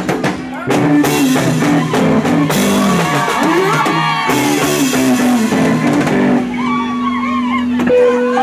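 A live band plays Congolese-style music: a lead electric guitar over bass guitar and a drum kit, with cymbal crashes. For the last second or two the drums thin out, leaving a held bass note under the guitar.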